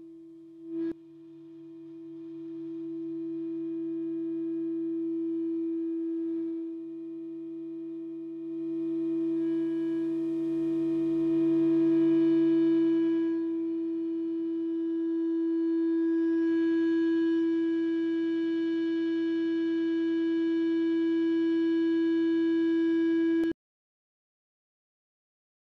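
A warning siren sounding one steady held tone with overtones, slowly swelling louder and softer, then cutting off suddenly near the end.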